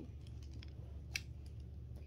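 Small plastic puzzle cube being handled: a few faint ticks and one sharp click about a second in, over a low steady room hum.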